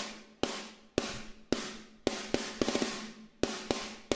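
Sampled EZdrummer snare drum playing a rock beat through EZmix 2's 'Snare' preset with its compressor (snap) knob turned all the way up. The hits are sharp with a short decay, about two a second, with a quicker run of strokes in the middle.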